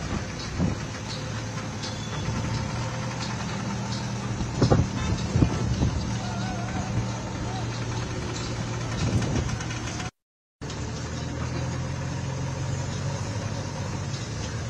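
Diesel engines of construction machinery running steadily, with a few loud knocks about five seconds in. The sound drops out briefly about ten seconds in.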